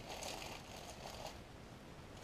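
Faint rustle of a clear plastic bag of small flat ceramic tiles being handled and set down in a cardboard box, the tiles shifting inside; it dies away after about a second.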